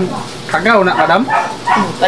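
People talking in short spoken phrases, with a brief pause in the middle.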